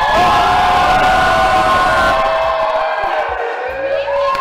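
A crowd cheering loudly, with long held shouts and whoops.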